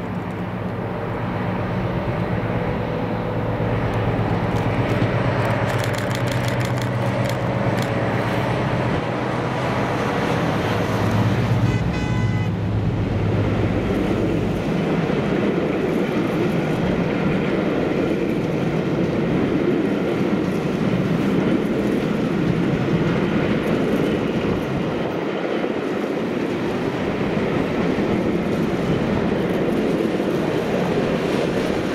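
A diesel-hauled passenger train passes at speed. The lead locomotive's engine runs with a steady low note that drops away about halfway through, leaving the even rumble of the coaches rolling over the rails. The rear locomotive comes by near the end.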